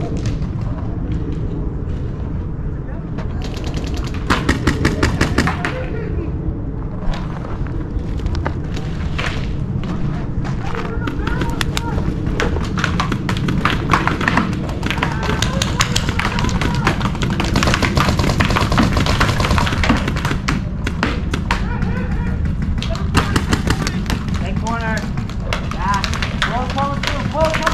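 Paintball markers firing in rapid strings of shots, several bursts coming and going throughout, amid distant shouting from players on the field.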